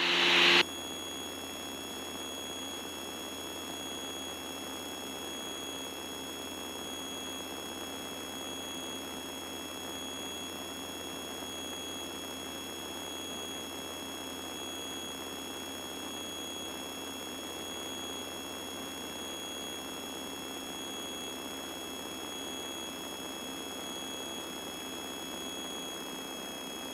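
Steady low-level hiss with several faint, constant high-pitched whines and a faint beep repeating at even intervals. This is the aircraft's intercom audio feed, with the twin engines' noise largely filtered out.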